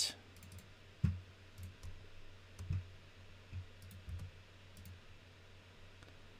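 Scattered clicks of a computer keyboard and mouse, a few sharp high ticks and several soft low thuds spread over the seconds, over a faint low hum.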